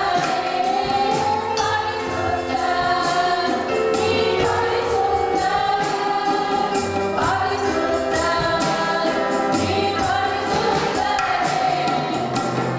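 Gospel worship song: a woman's amplified voice singing long held lines into a microphone, with violin and electronic keyboard accompaniment over a steady beat.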